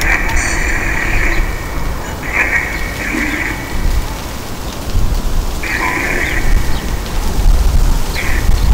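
Four short bursts of band-limited static hiss, as from a spirit box scanning for answers, over a low wind rumble on the microphone that grows stronger in the second half.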